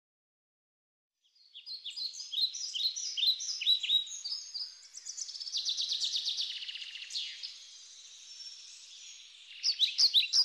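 Small songbirds singing, starting after about a second of silence: quick series of high chirping notes, with a rapid trill in the middle and louder chirps again near the end.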